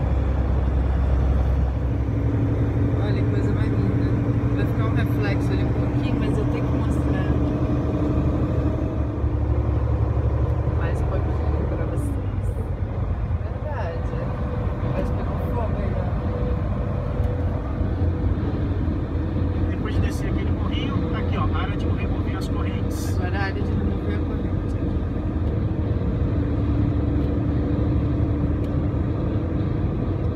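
Steady low drone of a semi-truck's engine and road rumble heard from inside the cab at highway speed. The engine note falls away about twelve seconds in, then settles into a new steady pitch.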